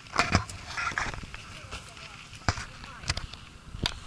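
Faint voices with a few sharp knocks or crunches, the loudest near the start and another about two and a half seconds in.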